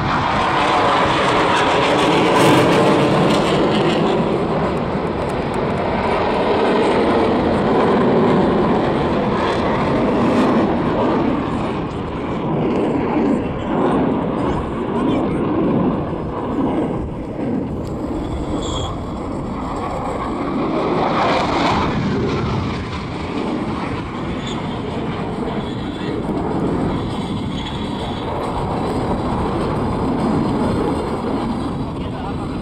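Jet noise from a KAI T-50 trainer's single turbofan as it flies a display. A loud roar fills roughly the first ten seconds as the jet passes, then it drops to a lower, continuing rumble with another brief swell a little past the middle.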